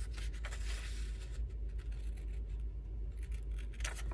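Scissors snipping through a book page, a run of short cuts with paper rustle, busiest in the first second and a half.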